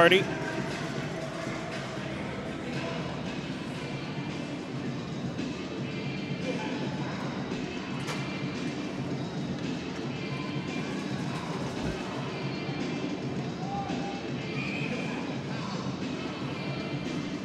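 Ice hockey arena during a stoppage in play: music over the arena's public-address system with a murmur of crowd voices, at a steady moderate level.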